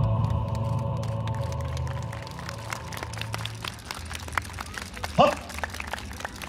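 Yosakoi dance music over the PA fades out as scattered audience clapping carries on, with a short rising voice call about five seconds in.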